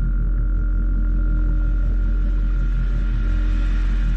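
Electronic drone soundtrack of a TV channel's logo ident: a loud, steady deep rumble with a fluttering low pulse and a held high tone above it.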